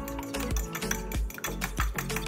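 A fork clicking rapidly against a small glass bowl as eggs are beaten, over a background song with a steady beat.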